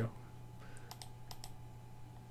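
A few faint, sharp computer clicks, about four in under a second, over a steady low electrical hum.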